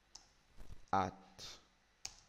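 A few short computer keyboard key clicks as a word is typed, with a man saying "at" about a second in.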